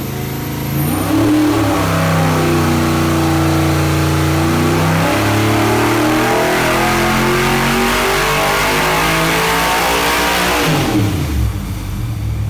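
A 408 cubic-inch dry-sump V8 race engine on an engine dyno, making a wide-open-throttle pull and climbing through the revs for about ten seconds. Near the end the throttle closes and the engine quickly winds back down.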